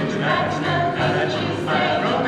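A small mixed vocal jazz ensemble singing in harmony, holding and moving between sustained notes.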